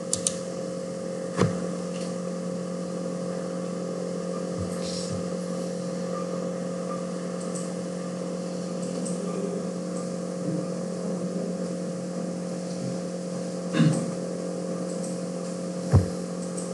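Steady hum holding two constant tones, with a few short clicks: one about a second and a half in, one near the end and one right at the end.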